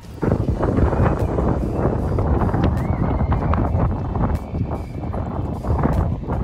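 Wind buffeting a phone microphone outdoors: a rough, gusting rumble with many irregular knocks and rustles.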